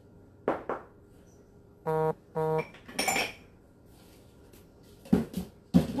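Decorations being handled and put into a basket: scattered knocks and clinks, with a pair of short, identical tones about two seconds in.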